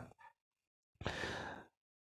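A man's single short breath, a sigh, about a second in.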